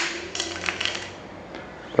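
Handling noise from a single-solenoid pneumatic valve held in the hand: one sharp click at the start, then a short run of light metallic clicks about half a second in.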